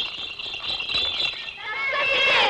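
Rapid rattling under a high held note, with high-pitched singing coming in near the end.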